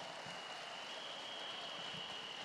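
Audience applause filling a large hall, an even patter of many hands, with a faint steady high-pitched tone running through it.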